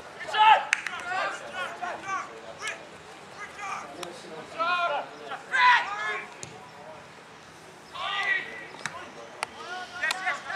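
Raised voices calling and shouting out in short bursts across an open football ground, with a few short sharp knocks in between.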